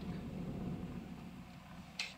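Faint, steady low rumble of a car's cabin while it drives slowly.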